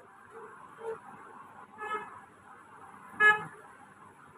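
Three short honks, a second or so apart, the last and loudest near the end, over a faint steady hiss.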